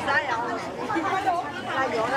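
Several people talking at once, close by: the overlapping chatter of a busy market crowd.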